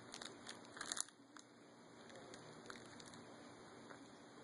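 Faint crinkling and clicking, a cluster of short crackles loudest about a second in, then quiet room tone.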